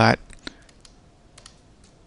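A few faint, scattered clicks of a computer keyboard and mouse, at irregular moments through a quiet pause.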